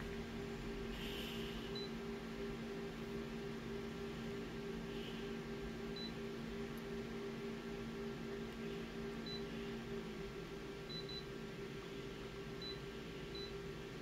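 Multifunction colour photocopier's touchscreen giving short, high beeps, about seven in all, two of them close together, as its menu keys are tapped. Under the beeps runs a steady hum from the machine, whose lower tone stops about ten seconds in.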